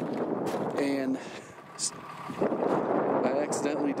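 A brief voice about a second in. From about halfway, a steady rushing noise of wind on the microphone, with a vehicle running under it.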